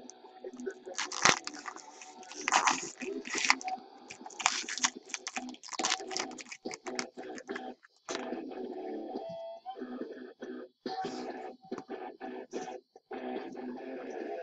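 Plastic wrapping on a trading-card pack crinkling and tearing as it is opened, in irregular crackly bursts, with faint music underneath.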